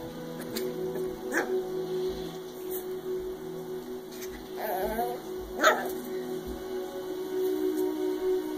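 A puppy giving a few short, scattered yips while playing with a toy, the loudest about two-thirds of the way through.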